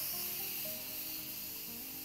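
Instant Pot electric pressure cooker venting steam through its release valve in a quick pressure release: a steady high hiss that slowly fades. Soft background music plays underneath.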